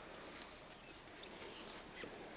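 Faint shuffling and movement, with one short, sharp, high-pitched clink about a second in.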